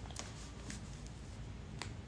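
Quiet room noise with three faint, sharp clicks spread over two seconds.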